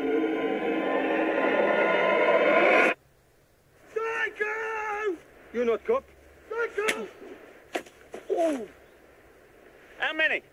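A film soundtrack swell: a loud rush of noise with held tones that rises in pitch and cuts off abruptly about three seconds in. Men's shouting follows.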